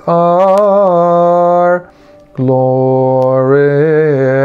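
A man singing a Coptic hymn solo and unaccompanied, drawing out long vowel notes in melisma with small wavering turns. He breaks off for a breath a little under two seconds in, then starts another long held note.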